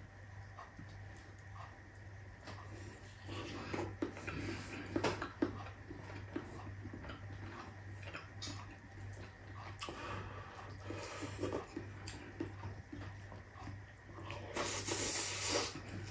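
Soft close-miked eating sounds: chewing with small wet mouth smacks and clicks as rice and eggplant omelette are eaten by hand, over a steady low hum. A louder breathy rush comes near the end.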